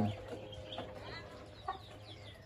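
Chickens clucking faintly, with a few short high chirps.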